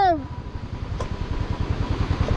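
Motorcycle engine running at low speed, its firing pulses making a steady low beat, with one sharp click about a second in.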